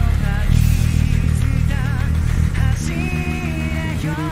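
Rock band music with a five-string electric bass playing a driving line of rapid repeated notes. Above it, a higher melody line wavers with vibrato and then holds a long note near the end.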